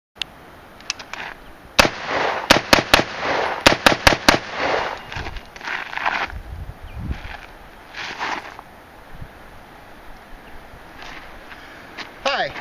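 AR-15 rifle firing a quick string of about nine shots, starting about two seconds in and lasting roughly two and a half seconds. Softer scattered noises and a couple of fainter bangs follow.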